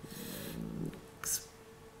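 A man speaking quietly, a brief word or two between pauses, over a faint steady hum.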